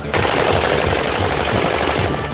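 Automatic gunfire in one continuous burst of almost two seconds, starting abruptly just after the opening: celebratory firing into the air.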